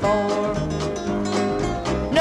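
A 1960s–70s country record playing: guitars and the band carry the tune in a short instrumental gap between sung lines.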